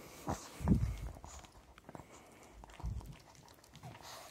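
Small dog licking a man's nose and lips close to the microphone: a string of short wet licks and smacks, with two louder low thumps, about a second in and near three seconds.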